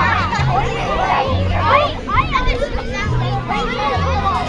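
Crowd of children chattering and calling out over music with a bass line of held notes that changes pitch every second or so.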